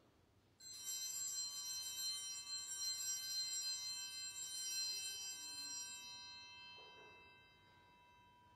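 Small metal altar bells ring with a sudden start about half a second in. They shimmer with many high, bright tones for several seconds, then fade away.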